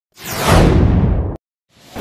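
Whoosh sound effect of a TV news intro: a sweep falling in pitch over a deep rumble, cut off suddenly at just under a second and a half in.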